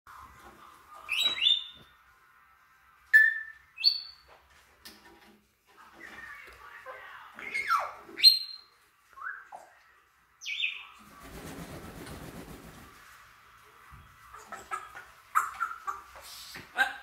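African grey parrots whistling, chirping and calling: separate sharp whistles and squawks with rising and falling pitch, some of them loud. About eleven seconds in there is a two-second rapid fluttering rustle of flapping wings.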